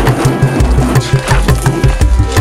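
Background music with a steady, pulsing bass beat and sharp hand-percussion clicks over held tones.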